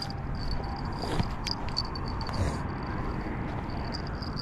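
Outdoor background: a steady low rumble with a faint, steady high-pitched tone running through it, and a few light clicks.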